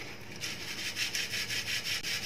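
Wheat flour with baking powder being worked through a metal wire-mesh sieve, a fast, even scratching rhythm that starts about half a second in as the lumps are pushed and sifted through the mesh.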